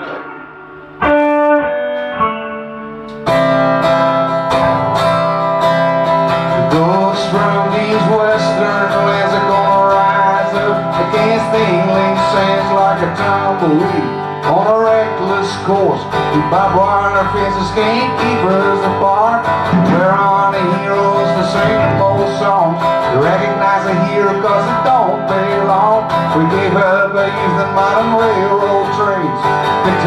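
A four-piece rock band plays a southern rock song live in rehearsal on drum kit, bass, acoustic guitar and electric guitar. A few single guitar notes ring out first, the full band comes in about three seconds in, and a sung lead vocal joins from about seven seconds in.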